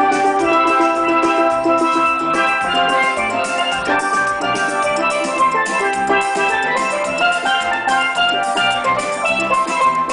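Steel band playing: steelpans ringing out a melody and chords over drums keeping a steady beat.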